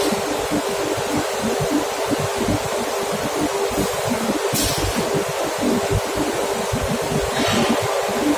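Steady loud machinery noise: a continuous rush with a steady hum underneath, and two brief hisses, one about midway and one near the end.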